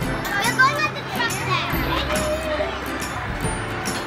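Carousel music playing with a steady beat, with children's voices over it in the first part.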